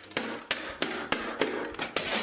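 A frying pan repeatedly striking a puppet's head: about seven sharp knocks, roughly three a second.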